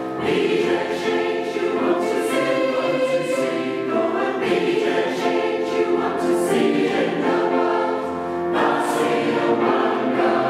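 Mixed-voice community choir singing in four parts (soprano, alto, tenor, bass) in a church, sustained chords with a new phrase coming in near the end.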